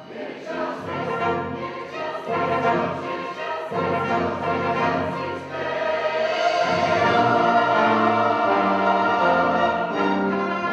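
Mixed choir singing with an orchestra of strings and horn accompanying. The music is soft at the start and swells louder from about six seconds in.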